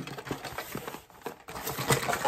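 Cardboard kit box and its packaging being handled and tipped: a run of light taps, scrapes and rustles, with a short lull a little after a second in.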